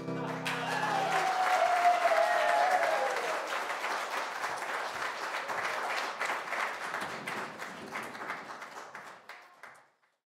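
The final chord of a Yamaha grand piano rings out for about a second, then an audience applauds, with someone cheering near the start. The clapping thins and fades out near the end.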